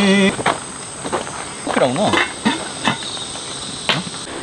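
Insects chirping in a steady high tone, with a few light clicks and knocks as a metal cooking pot is handled and set down.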